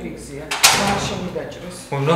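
Spoken drama dialogue, with a short sharp noise about half a second in.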